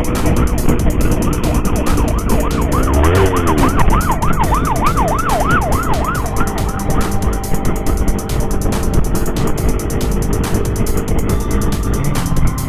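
An emergency siren on a fast yelp, rising and falling about five times a second. It grows loud about three seconds in and fades out after about six seconds, over the steady wind and engine noise of a moving motorcycle.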